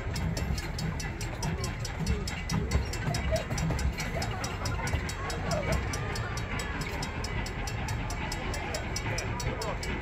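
Railroad grade-crossing bell ringing in rapid, even strikes as the crossing signals activate for an approaching train, over a low rumble.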